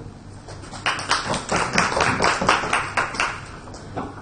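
Audience clapping after a talk. It starts about a second in, the claps come evenly at about five a second, and it stops after about two and a half seconds.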